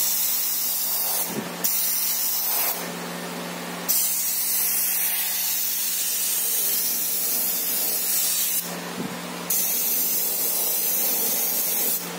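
Gravity-feed airbrush spraying paint, its air hissing in four bursts as the trigger is pressed and released. The two later bursts are the longest, about four to five seconds each.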